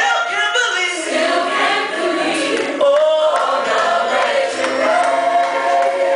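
Gospel choir singing with musical accompaniment, holding a long note from about three seconds in.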